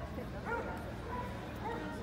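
A dog barking a few short times, with people talking in the background.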